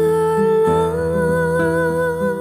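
A woman singing one long held note with vibrato over a soft instrumental backing, the note stepping up in pitch about a second in.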